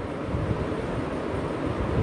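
Steady low rumble with a hiss over it, without clear separate strokes.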